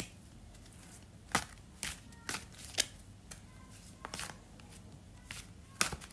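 A deck of round tarot cards being shuffled by hand: irregular, sharp little clicks of cards knocking and sliding against each other.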